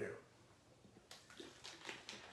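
A man drinking from a small plastic water bottle: a few faint, short sounds of water moving and gulps about a second in.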